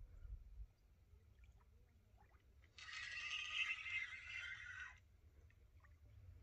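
Fishing reel's drag letting out line for about two seconds, a dry buzzing whirr that starts suddenly a few seconds in and cuts off abruptly: the hooked carp is running and taking line against the bent rod.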